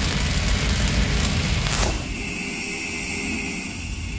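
Logo-intro sound effect: the dense, rumbling tail of a cinematic boom. A whoosh sweeps downward about two seconds in, then the sound settles into a steadier, quieter drone with a held high tone.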